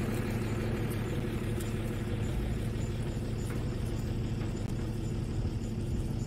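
Vehicle engine idling: a steady low rumble, with faint high ticks about twice a second.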